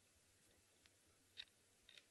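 Near silence: faint background hiss with a few faint short clicks, about one every half second in the second half.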